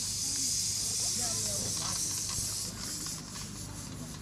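Steady high hiss that eases off near the end, with faint voices talking in the background.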